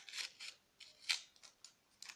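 A small strip of paper being handled and folded in the fingers, rustling and crinkling in several short, irregular bursts; the loudest comes a little past halfway.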